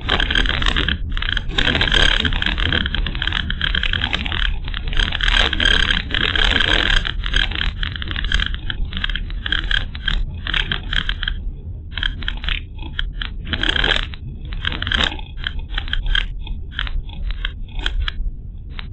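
Car driving over a rough, patchy road, heard from inside the cabin: a steady low road and engine rumble under a dense, fast rattle from loose parts shaking over the bumps. The rattling is heaviest for the first several seconds, flares again a little after the middle, and eases off near the end as the road turns smoother.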